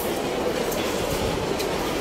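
Steady, even background noise of a large indoor public space, with no distinct events standing out.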